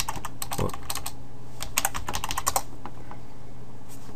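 Computer keyboard keystrokes in two quick bursts, one at the start and another a second and a half in, stopping before three seconds in.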